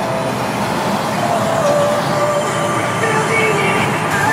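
Steady road noise from inside a vehicle driving through a highway tunnel: tyre and engine noise from the car and a semi truck close behind, reverberating off the tunnel walls, with a few faint steady whining tones over it.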